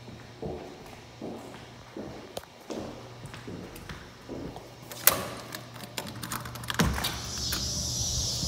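Footsteps across a hard floor, then a door latch clicks about five seconds in and the back door knocks as it swings open near seven seconds. From then on a steady high chorus of insects comes in from outdoors.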